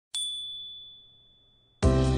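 A single bright, high-pitched ding sound effect struck once over a title card, ringing out and fading away over about a second and a half. Just before the end, background music with a beat cuts in abruptly.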